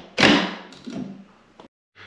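Plastic round ceiling grille fascia of an inline bathroom fan being pushed and clipped onto its base: one sharp snap just after the start, then a fainter knock about a second in.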